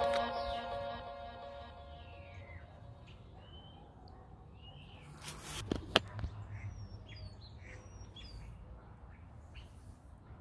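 Background music fading out over the first two to three seconds, then faint outdoor ambience with birds chirping, and a couple of brief knocks about six seconds in.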